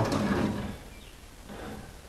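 Wire coat hangers shifting and scraping in a wooden dresser drawer as a hand moves them, loudest in the first half-second, then faint.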